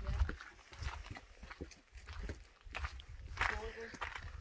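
Irregular footsteps on a stone and earth path, with low rumbling on the microphone and a brief voice near the end.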